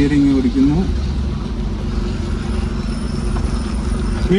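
Car engine running steadily at low speed, heard inside the cabin as a constant low hum and rumble; a man's voice is heard briefly at the start.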